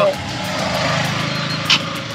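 A small motor vehicle engine running steadily with an even low pulse, and a brief click near the end.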